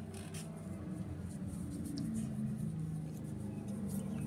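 A Ford Mustang's engine running, heard as a steady low drone that swells slightly about two seconds in. Soft rubbing of a cloth on the phonograph reproducer's mica sits faintly over it.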